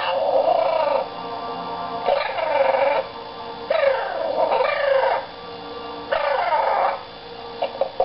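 Loud, harsh parrot squawks, about four calls each lasting roughly a second, with gaps between them.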